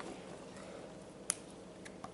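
Two small sharp clicks, one about a second in and a fainter one near the end, from hands handling carrot pieces over a plastic ice-lolly mould filled with water.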